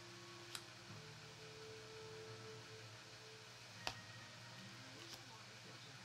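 Near-quiet room with a low hum and a few faint, sharp clicks of trading cards being handled. The sharpest click comes a little before four seconds in.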